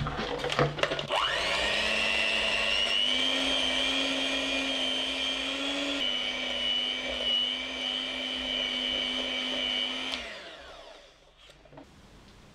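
Electric hand mixer creaming butter in a glass bowl. A few clicks come first, then the motor spins up with a rising whine about a second in and runs at a steady pitch. Near the end it winds down and stops.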